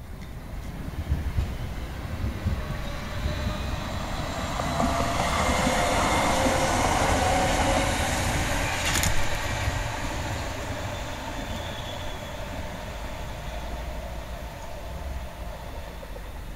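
Tram passing close by on curved track: wheels rumbling on the rails, with a whine that swells as it nears and fades as it goes. One sharp click comes about nine seconds in, at its loudest.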